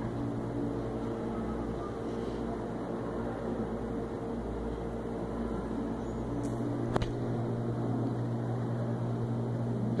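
Steady low mechanical hum, like room ventilation or a fan running, with one sharp click about seven seconds in.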